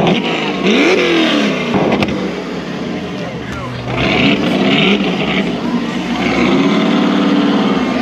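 Ford Mustang's engine revving in rising blips after a burnout, then held at steady revs near the end.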